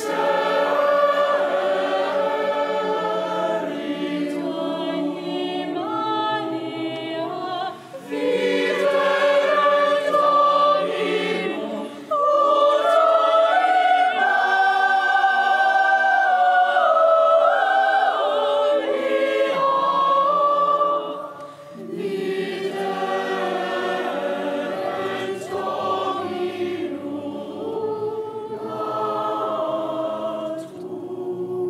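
Cathedral choir of children and teenagers singing a carol in parts, in long phrases broken by short pauses about 8, 12 and 21 seconds in.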